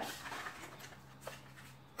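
Quiet handling of a deck of cards spread on a table: a few faint rustles and a light tap, over a low steady hum.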